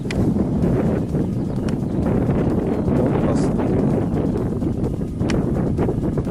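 Wind buffeting the camera microphone: a steady low rumble.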